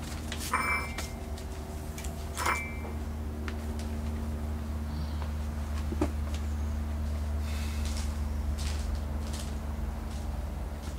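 Steady low background hum, with two short squeaky noises about half a second and two and a half seconds in.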